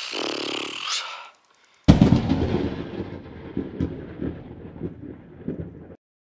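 A single sudden loud boom about two seconds in, dying away with a rumbling tail over the next four seconds and then cutting off. Before it comes a brief breathy sound lasting about a second.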